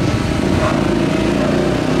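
Ford Focus hatchback's engine running with a steady low note as the car drives slowly past close by.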